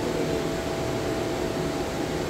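Steady air-conditioning hum and hiss of a large indoor space, with a few faint steady tones over the noise and no distinct events.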